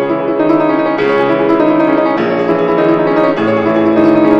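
Grand piano played live: a fast, dense passage of many quick notes at a steady, full loudness, part of a concert étude in C-sharp minor.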